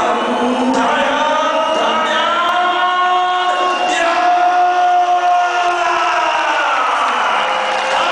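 A boxing crowd chanting together in long, drawn-out sung notes, with cheering.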